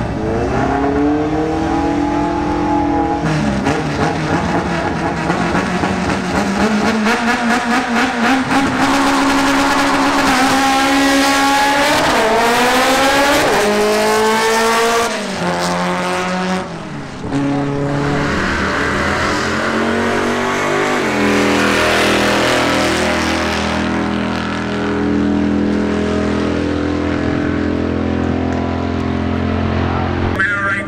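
Drag cars launching and running down the strip, engines revving hard, with the pitch climbing and dropping back at each gear shift. In the second half the engine sound settles into a steadier, lower drone.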